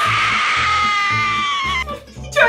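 A person's long, high-pitched scream held for almost two seconds, sliding slightly down in pitch and stopping just before the end, over background music with a steady low beat.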